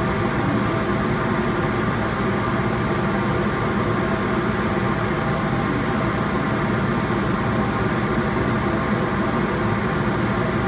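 Rebuilt Redsail CO2 laser cutter running while it cuts wood: a steady hum and whir from its exhaust blower, air-assist compressor, water pump and chiller, holding level with no change.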